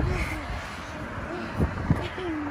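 A child's brief wordless voice sounds over wind rumbling on the microphone, with a few low bumps.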